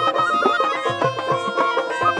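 Bengali Baul folk ensemble playing an instrumental passage: a bamboo flute carries an ornamented melody over harmonium and dotara. Underneath, a dhol keeps a steady beat of low strokes that drop in pitch, with small hand cymbals.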